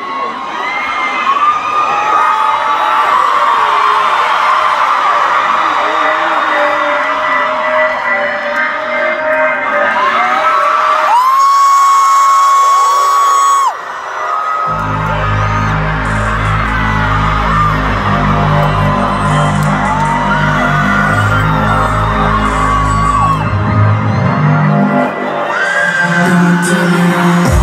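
Arena crowd of fans screaming and cheering, with many high shrieks. About halfway through, a loud, bass-heavy music track starts over the PA, and the screaming carries on over it.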